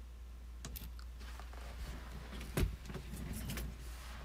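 A person getting up out of a leather office chair: scattered clicks, creaks and rustling, with one heavy thump about two and a half seconds in.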